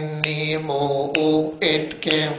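A man chanting a line of a Coptic hymn solo through a microphone, sustaining long even notes with short breaks and hissed 's' consonants between syllables.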